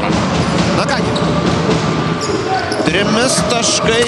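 Basketball game audio: a ball bouncing on the hardwood court amid steady arena noise, with a commentator's voice over it.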